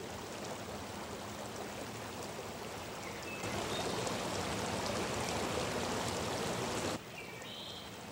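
Shallow creek water running and rippling over rocks: a steady rush that grows louder a few seconds in, then drops suddenly to a softer flow about a second before the end.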